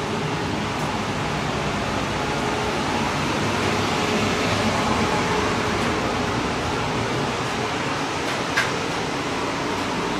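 A furnace's blower fan running steadily, a constant whooshing hum with a faint low drone under it. A single light tap sounds near the end.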